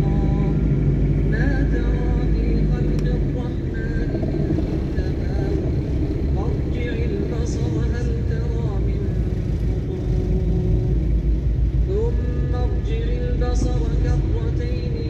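Steady low rumble of vehicle road noise in busy traffic, under a man's voice reciting the Quran in long held, sliding notes.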